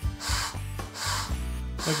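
Hand-squeezed rubber-bulb air blower (KOH Jet Air) puffing air in short hisses, about two a second, over background music with a steady bass line.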